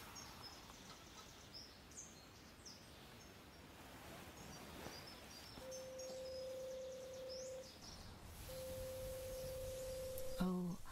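Faint outdoor ambience with scattered high bird chirps. In the second half a steady, mid-pitched single tone sounds twice, each time for about two seconds.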